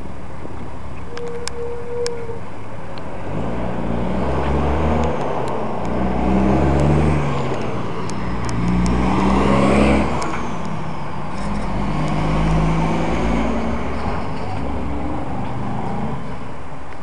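A car driving on a city street, its engine note and road noise swelling and easing several times as it speeds up and slows. It is loudest about ten seconds in.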